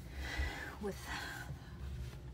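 A woman's voice saying a single soft word, over a steady low hum.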